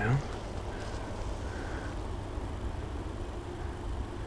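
Steady low outdoor background rumble with no distinct event, and two faint short high tones in the first two seconds.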